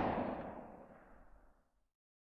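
The long echoing tail of a loud boom, a gunshot-like sound effect that ends the rap track, dying away to silence about a second in.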